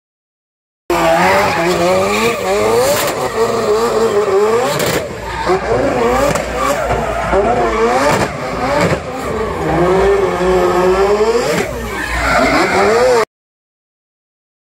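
Mazda 26B four-rotor twin-turbo rotary engine in a drift MX-5, revving hard, its pitch swinging up and down again and again as the car drifts, over tyre screech. The sound starts about a second in and cuts off abruptly near the end.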